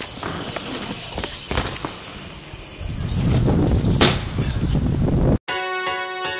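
Outdoor noise with a low rumble, scattered clicks and a few short high chirps. It cuts off abruptly about five and a half seconds in, and electronic music with a steady beat starts.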